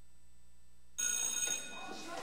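Electric school bell ringing briefly, starting about halfway through and fading out after under a second. Before it, a quiet stretch with a faint low hum.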